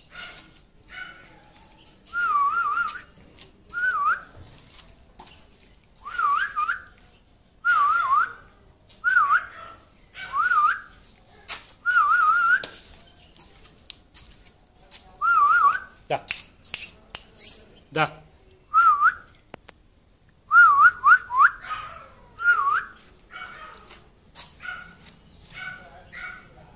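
A person whistling short warbling calls over and over, one every second or two, with a quick run of several calls a little past the middle.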